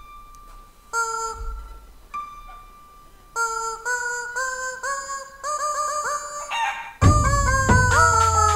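Rubber chickens squeezed to play a tune: a few long held squawks, then a quick run of short squawks climbing in pitch. About seven seconds in, marching drums come in loudly under more squawks.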